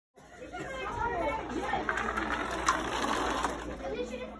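Several people's voices chattering in the background over a steady low hum, with a few sharp clicks about two seconds in.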